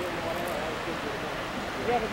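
Faint men's conversation, with a few short phrases of talk over a steady rushing hiss.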